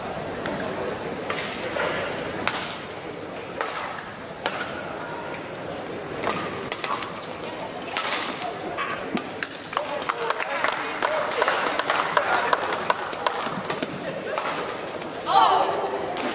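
A badminton rally in a large hall: sharp racket strikes on the shuttlecock come irregularly, roughly once a second, over steady spectator chatter. A short voice call rises near the end as the rally finishes.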